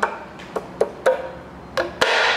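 A gloved fist knocking a steel timing cover onto its locating dowels on a Chevrolet 454 big-block V8, five hollow knocks at uneven intervals, each with a brief ring from the cover.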